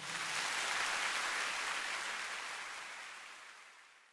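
Concert hall audience applauding after a song, the clapping fading out gradually over the last two seconds.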